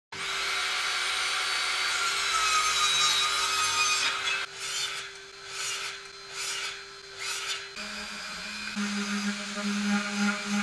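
Woodworking power tools cutting and sanding plywood: a table saw running steadily, then a sliding mitre saw making about four short cuts, then a palm sander running with a steady hum from a little before eight seconds in.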